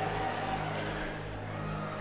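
A low, steady drone of a few held low tones through the church sound system, with the reverberation of the preacher's last words fading away.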